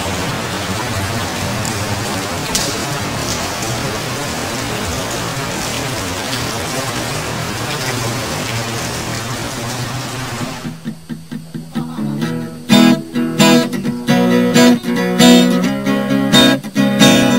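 Song intro: a steady hiss over low held notes for about ten seconds, then an acoustic guitar comes in, picked notes at first and loud strummed chords a couple of seconds later.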